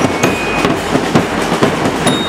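Marching band percussion — bass drums, snare drums and crash cymbals — beating a steady march rhythm, with one or two ringing bell lyre notes over the drums.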